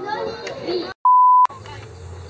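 A loud electronic beep: a single steady pure tone lasting about half a second, edited into the soundtrack. It comes in about a second in, just after the children's voices cut off into silence.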